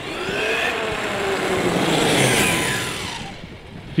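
HoBao Hyper MT Sport Plus RC monster truck's brushless electric motor whining as the truck speeds past at about 52 km/h on a 4S LiPo. The whine rises and grows louder to a peak about two seconds in, then drops in pitch and fades as the truck goes away.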